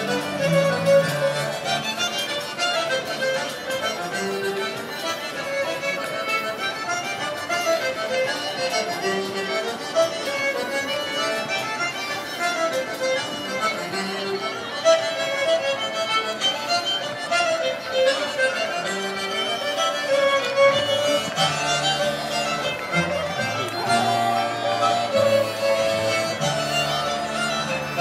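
A folk band playing a scottish (schottische) for dancing, the tune running steadily throughout.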